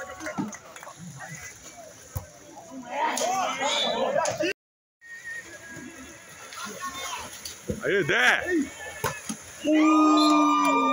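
Shouting voices of players and spectators during a pool volleyball rally, loudest about three seconds in and again near the eighth second, with a few sharp knocks from the play. The sound cuts out completely for about half a second near the middle.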